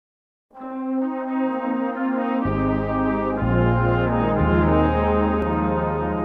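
Instrumental introduction to a slow worship song, played by a brass band in sustained chords. The music starts after a moment of silence, and deep bass notes come in about two and a half seconds in.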